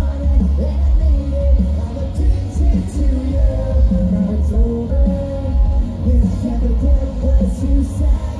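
Live pop-punk band playing with drums, electric guitars and bass under a sung vocal melody, recorded from the audience with a heavy, booming low end.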